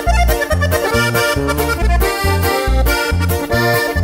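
Button accordion playing an instrumental melody fill between sung lines of a ranchera, over a steady bass line with notes about twice a second.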